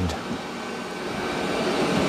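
Robot vacuum-mops running as they drive back toward their docking stations: a steady whir that grows gradually louder.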